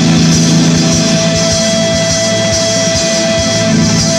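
Live rock band playing: an electric guitar holds one long lead note over bass and drums, the note breaking off just before the end.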